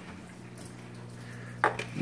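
Quiet, steady low hum of the vivarium's small water pump, with one short soft noise near the end.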